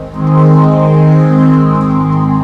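Synthesizer voice on a Roland home organ playing sustained chords. A fuller, louder chord comes in just after the start, and its notes shift partway through.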